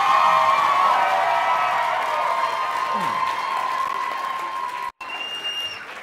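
Audience applauding and cheering with whoops as a performer walks on stage. The loud cheering slowly fades and cuts off suddenly about five seconds in, followed by a single steady high tone lasting about a second.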